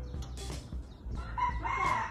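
A rooster crowing: one long held call that starts about one and a half seconds in.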